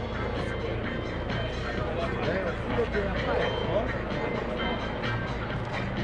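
Music with a singing voice played over an outdoor public-address system. Beneath it runs a steady low hum from the approaching AW139 helicopter.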